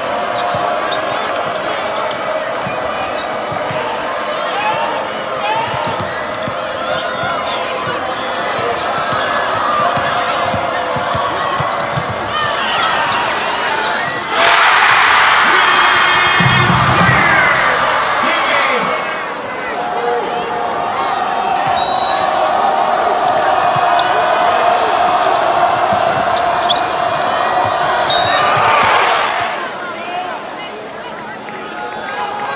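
Arena crowd noise during a basketball game, with sneakers squeaking on the hardwood and a basketball dribbling. About halfway through, the crowd suddenly gets much louder for several seconds.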